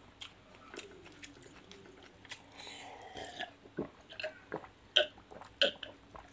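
Close mouth sounds of people chewing food by hand-fed mouthfuls of rice and boiled chicken: irregular wet smacks and clicks, with two sharper clicks near the end.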